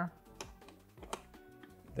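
Wooden puzzle pieces clicking and knocking lightly against each other and the wooden frame as a piece is set in, two short clicks, with faint background music.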